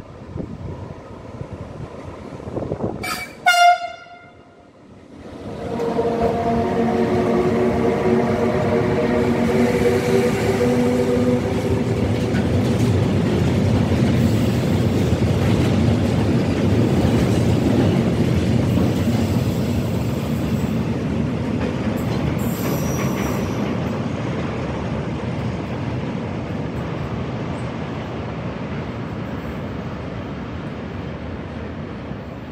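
An electric locomotive sounds a short horn blast, then runs past hauling a long string of Ermewa tank wagons; the wheels rumble and clatter steadily over the rails, slowly fading as the train goes by, with a brief high-pitched squeal partway through.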